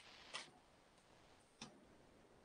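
Near silence: room tone, with two faint, brief sounds, about a third of a second in and again about a second and a half in.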